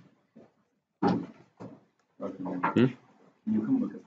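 Indistinct talking in three short bursts of speech.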